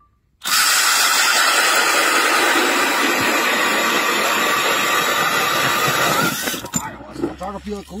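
Cordless drill driving a hand ice auger down through lake ice: a steady motor whine over the grinding and crunching of the auger blades cutting ice. It starts about half a second in and stops a little after six seconds, as the auger is drawn out of the hole.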